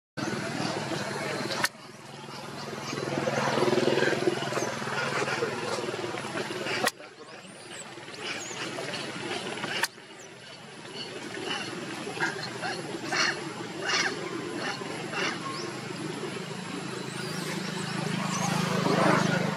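Macaque monkeys calling and screaming, with a baby monkey's high cries among them, over a steady low rumble. The sound cuts off abruptly and restarts several times.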